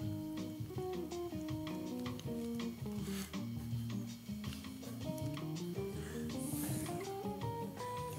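Background music: a melody of held notes changing one after another over a bass line.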